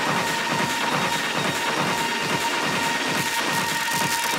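Breakdown in a techno DJ set: the kick drum and bass are out, leaving a noisy, clattering rhythmic texture with a steady high tone held over it.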